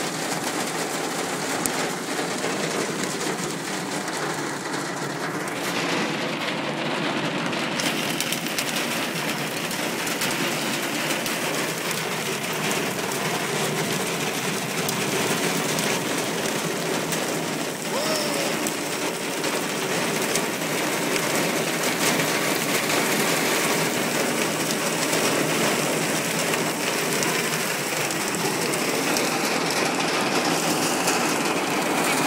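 Hail and rain pelting down in a dense, steady patter of countless small impacts, growing slightly louder in the second half.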